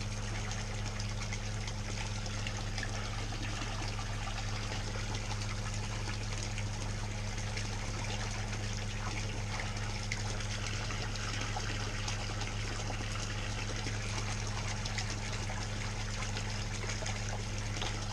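Water spraying from a PVC pipe and splashing into a pool pond. The sound is a steady, even splashing, with a steady low hum underneath.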